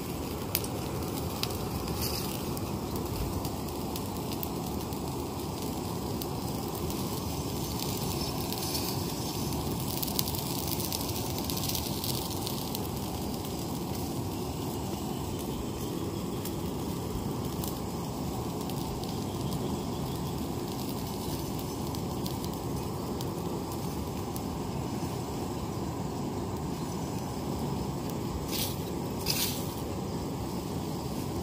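Charcoal forge fire burning under a steady air blast, a constant low rushing noise with light crackles, as a machete blade heats for hardening. A couple of sharp clicks come near the end.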